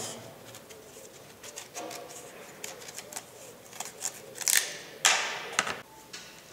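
A kitchen knife cutting and peeling the tough rind off a tagiri fruit: scattered small scrapes and ticks, then two louder rasping strokes near the end, the longer one about five seconds in.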